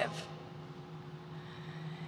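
A pause in a speech: quiet room tone of a hall with a faint, steady low hum, after the last word's echo dies away at the very start.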